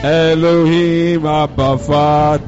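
A man singing a slow worship chant into a microphone, holding long notes that slide between pitches, with two short breaks for breath near the end.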